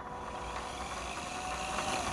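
Small electric motor on the test board running steadily, gradually getting louder, with a faint thin whine.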